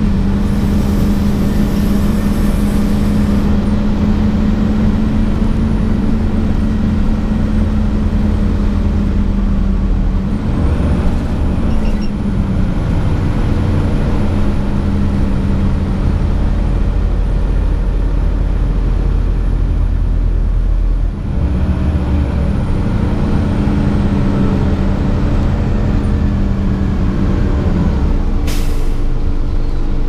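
Inside a 2004 Gillig Advantage transit bus under way: the engine and drivetrain run with a steady drone that falls in pitch about twelve seconds in and drops off briefly around twenty seconds in, with a faint high whine above it. Short hisses of air come at the start and near the end.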